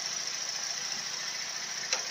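Holden VE Commodore's V6 engine idling steadily, heard from beneath the car. It is left running at idle because the 6L50 transmission's fluid level must be checked with the motor running.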